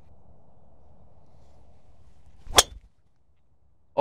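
A golf driver striking a teed-up ball: one sharp crack about two and a half seconds in. It is a flush strike, called the best strike so far.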